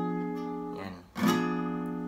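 Acoustic guitar sounding a G-sharp diminished chord. A strum rings and fades, and the chord is strummed again about a second in and left to ring.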